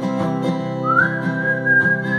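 Cutaway acoustic guitar strummed in a steady rhythm. About a second in, a whistled melody comes in with one note that slides up and is held.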